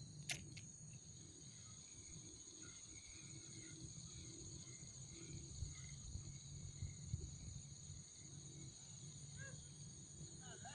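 Faint, steady high-pitched drone of insects, with a single sharp click just after the start and a low uneven rumble underneath.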